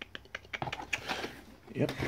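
Plastic blister packs of craft knives being handled and set down on a desk: a quick, irregular run of light clicks and crinkles.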